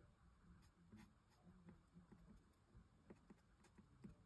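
Near silence, with faint strokes of an alcohol marker's nib on paper as a picture is shaded.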